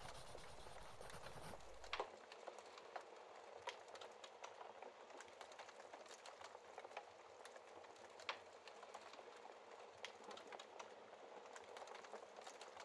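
Wood fire in a fireplace crackling faintly, with scattered pops; the sharpest come about two seconds in and again around eight seconds in. For the first two seconds a fuller hiss lies over the crackle and cuts off suddenly.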